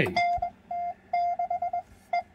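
Morse code (CW) heard through the Si4732 ATS Mini pocket receiver: a single-pitched tone keyed on and off in a run of dashes and quick dots.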